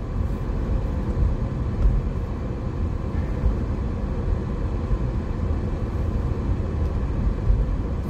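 Steady low rumble of a car on the move, heard from inside the cabin: engine and road noise with no sudden events.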